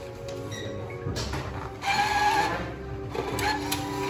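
Electronic game music and sound effects from a touch-screen slot machine's speakers: a steady looping tune, with a louder jingling burst of effects about two seconds in.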